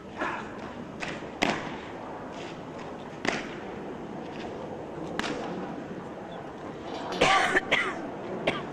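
Sharp single knocks of Foot Guards' drill, boots stamping on the parade ground and rifle movements, spaced a second or two apart, with a quick run of knocks near the end that is the loudest.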